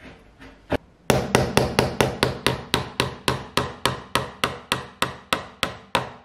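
Hammer tapping a small nail into the edge of a chipboard bookshelf panel. One knock comes first, then a steady run of sharp strikes, about four a second.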